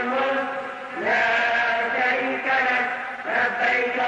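A single voice chanting in long held notes, each phrase opening with an upward slide in pitch; new phrases begin about a second in and again near the end.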